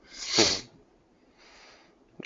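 A person sneezing once, a loud, brief burst about half a second in, followed by a faint hiss near the end.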